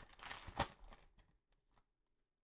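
Faint rustle and a few soft ticks of trading cards sliding out of a torn foil pack wrapper in the first second, then only a few fainter ticks as the cards are handled.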